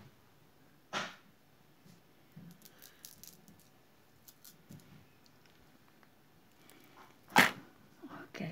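Two sharp knocks, one about a second in and a louder one near the end, with faint light clicks between them.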